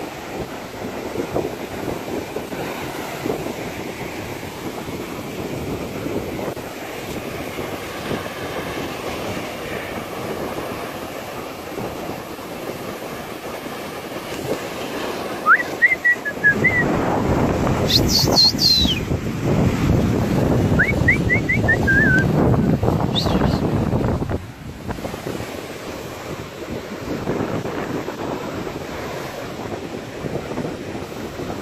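Sea surf washing onto a sandy beach, with wind noise on the microphone. For about eight seconds in the middle the noise grows louder and rougher, and a few short, high, rising chirps sound over it.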